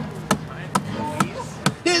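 Sharp percussive taps, evenly spaced at about two a second, keeping time as an acoustic song starts. A singing voice comes in right at the end.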